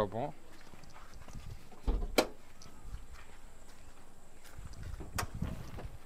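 A dull thump with a sharp click about two seconds in, then another sharp click near five seconds: the Toyota Etios Liva's body latches being worked, ending with the hatchback tailgate unlatched and lifted open.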